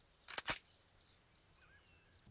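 Two quick, sharp clicks close together, then faint bird chirps over quiet jungle ambience.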